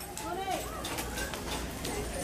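Faint voices in the background with a few scattered light clicks and knocks.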